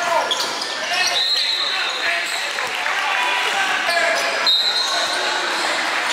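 Basketball game sounds in a gym hall: the ball bouncing on the court, sneakers squeaking sharply twice (about a second in and again past four seconds), over the chatter and shouts of players and spectators.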